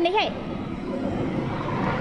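Motorbike engine running nearby: a steady hum that grows slightly louder toward the end.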